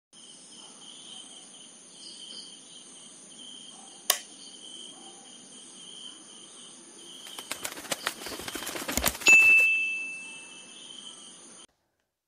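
Sound effects of an animated intro: steady high insect chirring as night ambience, with a single sharp click about four seconds in. A flurry of quick clicks follows from about seven seconds, then a single chime rings out and fades.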